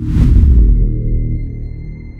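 Cinematic transition sound effect: a loud deep boom with a whoosh at the start, dying away over about a second into a sustained low drone with a thin high ringing tone above it.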